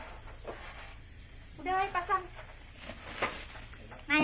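A short spoken phrase about two seconds in, then a brief rustle of plastic packaging.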